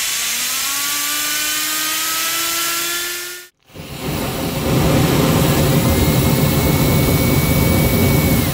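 A 3D-printed resin turbo pump driven by compressed air: a hiss of air with a whine that climbs slowly in pitch as the turbine spins up, cut off suddenly after about three and a half seconds. Then a small rocket burner fed by the turbo pump fires: a loud, steady rushing flame with a low rumble, and a high steady whine joins about two seconds later.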